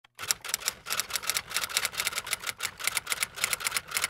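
Typewriter typing sound effect: a quick, slightly uneven run of key clicks, about six a second.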